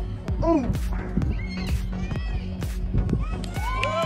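High-pitched shouts and calls from young players and spectators at a soccer match: a short cry about half a second in and several overlapping calls near the end. Beneath them run scattered sharp taps and a steady low hum.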